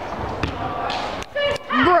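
Background noise of a large indoor sports hall with one sharp knock about half a second in, then a voice near the end.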